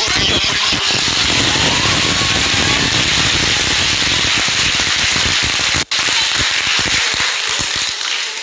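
Audience applause, loud and steady, with a momentary cut-out in the sound about six seconds in.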